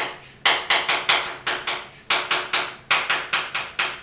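Chalk writing on a blackboard: a quick run of sharp taps and short scrapes, about five a second, as characters are written, with a brief pause about two seconds in.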